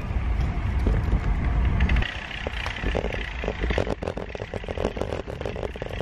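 Wind rumbling on the microphone for the first two seconds, then a run of irregular clicks and rattles as the camera moves with the rider on the bike.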